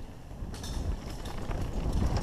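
Mountain bike rolling fast down a dirt and rock trail: wind rushing on the camera microphone and the tyres rumbling, with the bike rattling over rough ground from about half a second in.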